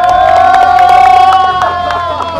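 A man's long held joyful yell on one steady note, sliding down in pitch as it ends, with cheering and scattered claps from the people around him.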